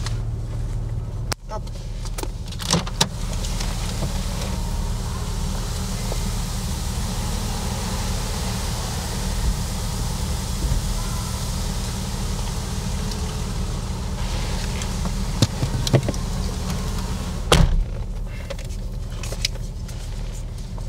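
A car door opens about a second in and shuts with a thump at about 17.5 s, the loudest sound. In between, a broad hiss grows louder for about ten seconds over a steady low hum.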